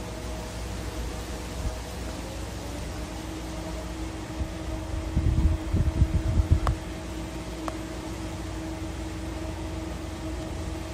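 Wind buffeting a phone's microphone outdoors: a steady low rumble that swells into stronger gusts about halfway through. A couple of faint clicks follow the gusts.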